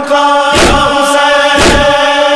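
Urdu devotional song, a salam to Imam Husain: a sung note held over a heavy beat that strikes about once a second.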